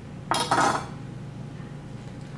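A metal kitchen knife clattering as it is set down on a stone countertop: two quick clinks close together, about a third of a second in.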